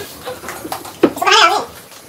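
A young child's short, high-pitched wavering squeal, about a second in.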